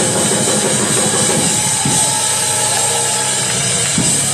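Loud live gospel worship music with drums, played by a church band as the congregation joins in. It comes across as a dense, steady wash of sound.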